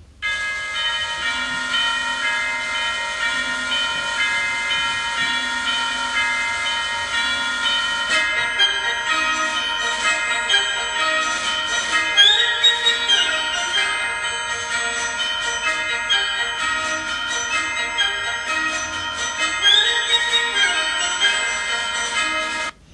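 Recorded music opening with orchestral chimes (tubular bells, metal tubes) ringing a clock-like bell pattern, each note ringing on. About eight seconds in the music grows busier as more struck notes and other parts join.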